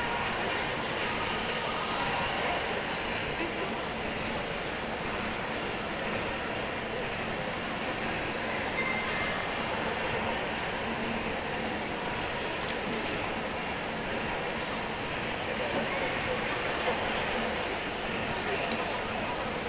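Steady ambient din with indistinct voices mixed into it, even in level throughout with no distinct events.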